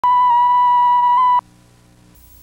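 Line-up test tone that goes with videotape colour bars: a loud, steady 1 kHz beep lasting about a second and a half, with a slight wobble in pitch, that cuts off suddenly, leaving a faint low hum.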